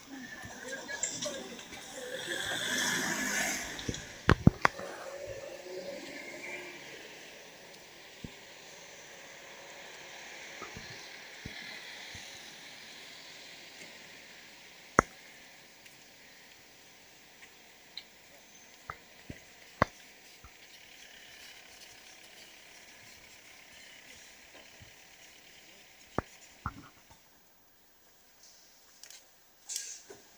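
Outdoor ambience with a group's indistinct voices, rising to a louder rush of noise about two to four seconds in, then a faint steady hiss broken by scattered single sharp clicks.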